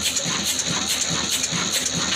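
Old black horizontal diesel engine with a large flywheel, running steadily. It gives a regular knock about four times a second over a constant hiss.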